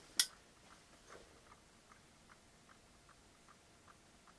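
Solar dancing pumpkin toy ticking faintly and evenly, about two and a half ticks a second, as its rocking body hits the limits of its swing: the toy is running at full stroke. One louder, sharper click comes just after the start.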